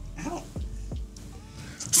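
Quiet, stifled laughter: short pitched breaths and a few high squeaky notes, held back behind a hand.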